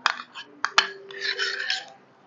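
Metal utensils clinking a few times against bowls, then a short scrape, as sticky butter is knocked and scraped off a spoon.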